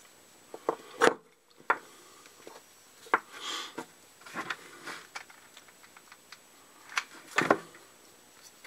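Wooden clothespins and small foam pads being handled on a plywood workbench: scattered clicks, taps and short rustles. The loudest taps come about a second in and again near the end.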